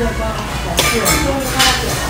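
Small metal okonomiyaki spatula scraping and clinking twice, about a second in and again near the end, as pieces of okonomiyaki are lifted off the iron teppan griddle, over background voices.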